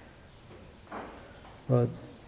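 A pause in a man's speech: a breath about a second in and a single spoken word near the end, over a faint, steady high-pitched whine.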